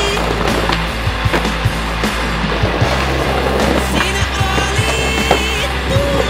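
Skateboard wheels rolling over stone paving slabs, with sharp clacks as the board is popped into a jump, under soundtrack music.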